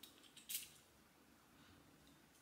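Dior Tobacolor perfume bottle's spray pump giving one short spritz about half a second in: a brief hiss, with faint clicks of the nozzle just before it.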